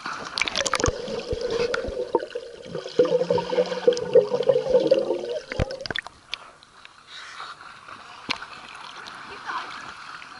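Lake water sloshing, gurgling and splashing against a camera microphone held at the water's surface, busy with sharp slaps in the first six seconds or so, then settling to quieter lapping with a few single splashes.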